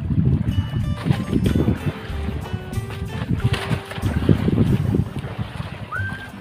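Wind rumbling and buffeting on the microphone on an open fishing boat at sea, in uneven gusts, under faint background music with a few held notes.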